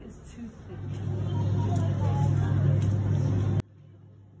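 A steady low hum with faint voices behind it. It swells in about a second in and cuts off abruptly near the end.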